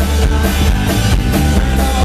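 Live rock band playing loudly: drum kit, electric and acoustic guitars and bass guitar, in a passage without vocals.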